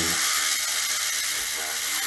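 Battery-powered gyroscope robot toy running, its small electric motor spinning the internal gyroscope wheel at high speed with a steady high-pitched whir.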